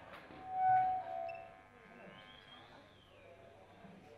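A quiet lull between songs in a concert hall: a brief held high note swells up about half a second in and fades, then a faint whistle-like tone glides up and back down near the middle.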